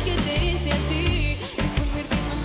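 Live pop song: a woman singing lead into a microphone over a band backing with bass and a steady drum beat.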